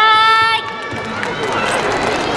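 Audience applause: an even clatter of many hands clapping, starting about half a second in, just after the announcer's drawn-out last syllable.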